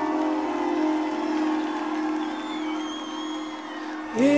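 Sustained keyboard chords, held steady with a few changes of note, while the crowd cheers.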